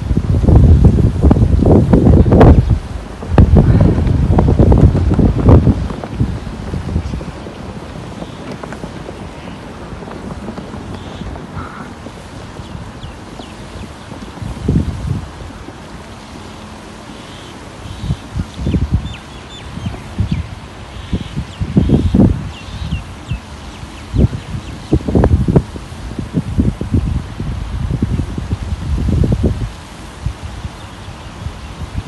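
Wind buffeting the microphone in irregular low gusts: loud for the first six seconds, calmer for a stretch, then gusting again from about fourteen seconds on.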